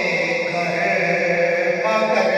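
A man's voice chanting an Urdu devotional kalaam into a microphone, drawing out long held notes with slow shifts in pitch.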